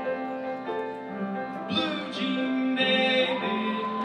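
Men's choir singing held chords, with a brighter voice with bending pitch coming in about two seconds in and a rising note near the end.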